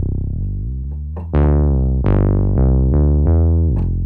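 Synthesizer bass line played from MIDI, a handful of notes with a rounded, soft tone. Each note starts bright and quickly fades into a dark tone, a patch chosen to suit a relaxed lo-fi track.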